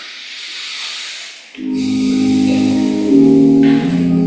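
A steady hiss, then offertory music starts suddenly about a second and a half in: sustained keyboard chords that change about twice.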